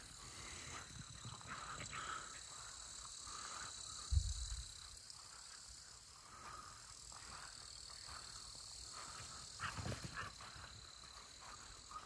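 Outdoor morning ambience over grass: a steady high-pitched insect drone, with two dull low thumps, one about four seconds in and one near ten seconds.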